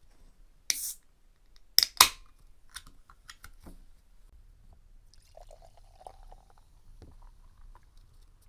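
A can of pale ale snapped open with a short hiss from the ring pull, then two sharp clicks a second later. A few seconds on, the beer is poured quietly into a glass.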